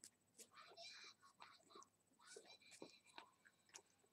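Near silence, with a faint whispering voice and a few small clicks.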